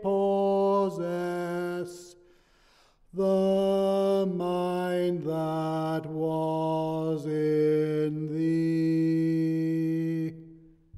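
A hymn being sung: the closing line of its final verse in slow, long-held notes, with a pause for breath about two seconds in and a long held final note near the end.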